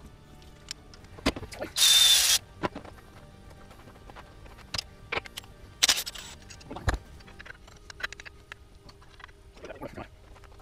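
Short bursts of a cordless power tool running bolts at the front of a Hemi V8 engine, the longest about half a second with a high whine, plus a second brief burst a few seconds later. Metal clicks and clinks of tools and parts come in between.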